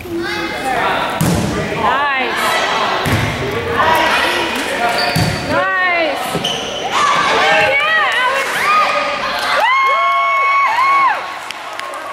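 A volleyball being struck a few times, with dull thuds echoing in a gym, while young girls shout and call out over the play. Near the end come long, high-pitched cheers or squeals.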